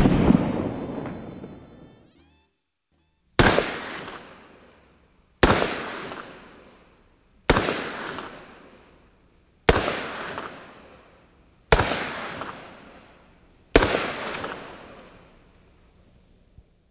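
Smith & Wesson Model 629 stainless .44 Magnum revolver fired seven times: one shot at the start, then six shots about two seconds apart. Each report is followed by a long echo that dies away over about two seconds.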